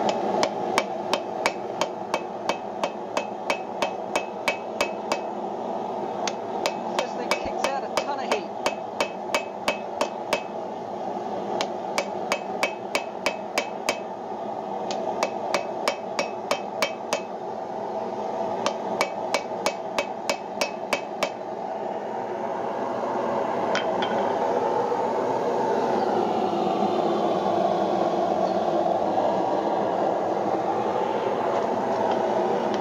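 Hand hammer drawing out the red-hot wrought-iron rein of a pair of tongs on an anvil: even blows about two to three a second in runs of several seconds with short pauses, each blow with a brief metallic ring. The hammering stops a little over twenty seconds in, leaving a steady rushing noise that grows louder.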